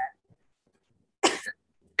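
A woman's single short cough, about a second in.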